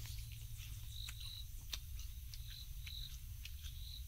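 A small creature's short, high chirp repeating about every second and a half, with scattered faint clicks over a low steady rumble.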